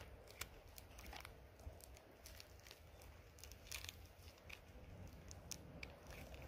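Faint handling noise: small pieces of copper sulphide ore clicking against each other and a rubber-coated work glove rustling as the chips are turned in the hand, as scattered irregular clicks over a low steady rumble.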